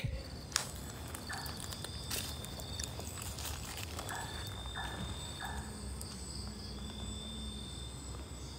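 Night-time tropical forest ambience: a steady, faint, high chirring of night insects, with a few soft brief rustles.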